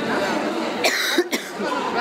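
A woman coughing into her fist: a short cough about a second in, over background chatter of voices.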